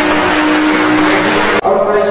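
Audience applauding over band music with a held brass note, both cut off abruptly about one and a half seconds in, giving way to voices chanting.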